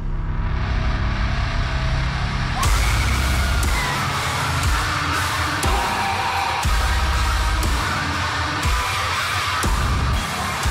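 Heavy metal recording with crunchy, heavily distorted guitar. It opens on a low, held passage, then the full band crashes in about two and a half seconds in and drives on with repeated drum hits.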